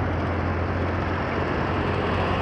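Road traffic: a steady low engine hum from idling and passing vehicles, with cars driving by close in front.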